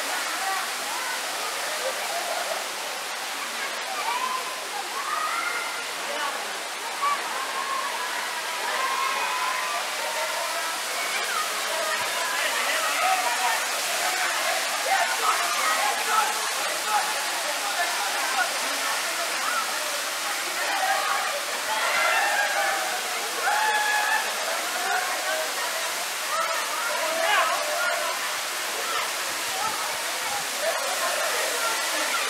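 Steady rush of a waterfall pouring into a rock pool, with a crowd of people chattering and calling out over it throughout.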